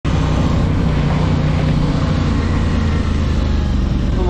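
Motorcycle engine running steadily under a broad rush of wind noise, its note dropping lower about halfway through.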